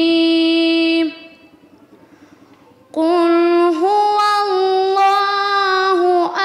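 A young girl chanting religious Arabic verses unaccompanied, in long held notes with melodic turns. She breaks off about a second in and starts a new phrase after a pause of about two seconds.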